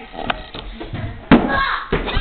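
A small cardboard box is kicked on a wooden floor: a faint knock early, then a loud, sharp thud about a second in, followed by a short laugh.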